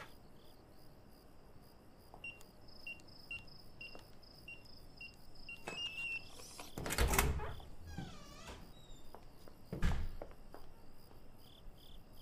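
Crickets chirping in a steady, even rhythm, with two dull thuds about seven and ten seconds in.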